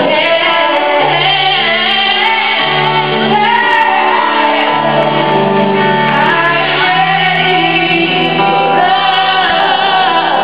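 A woman sings a slow soul ballad into a microphone, with a live band behind her. Held low chords change every second or two under her voice.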